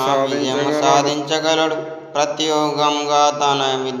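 A man's voice reciting in a chanting, mantra-like cadence, with a brief pause about two seconds in.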